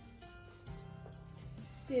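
Soft background music with steady held notes.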